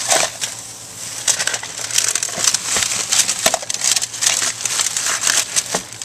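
Plastic crinkling and crackling, a dense run of sharp crackles from about a second in until near the end, as a broken VHS tape is handled and put into a plastic trash bag.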